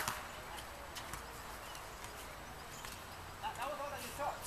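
Sharp knocks of a soccer ball on a hard tennis court, the loudest right at the start and then a few faint ones. Players' voices call out near the end.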